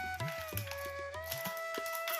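Background instrumental music: a flute melody of long held notes that slide from one pitch to the next, over a low steady drone and light percussion.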